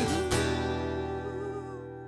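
Acoustic guitar: a chord strummed just after the start and left to ring, fading away steadily, as a sung note ends.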